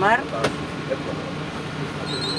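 Steady running noise of a coach bus, heard from inside the passenger cabin, with one sharp click about half a second in.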